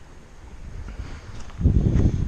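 Wind buffeting the camera's microphone: an uneven low rumble that gusts much louder about a second and a half in.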